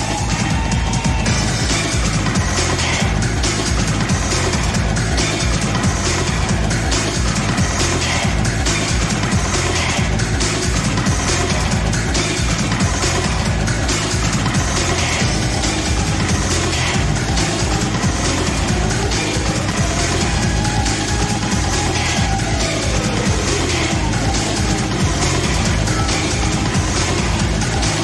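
Loud nu-skool breaks electronic dance music from a live DJ set: a dense broken drum beat over heavy bass, with a falling tone sliding down about two-thirds of the way through.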